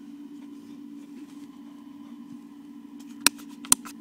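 A steady low hum from the helmet's built-in electronics, with two sharp clicks near the end, about half a second apart.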